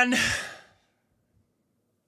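A man's breathy sigh trailing off the end of a spoken phrase, fading out within about a second.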